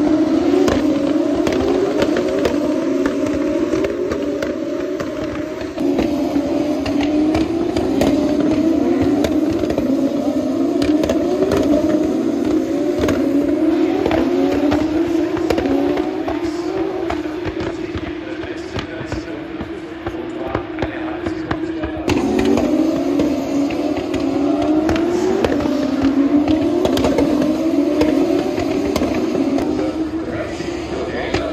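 Several Formula 1 cars' turbo-hybrid V6 engines accelerating in a pack, each engine note climbing in pitch and dropping back at each upshift, over and over. The sound jumps abruptly twice.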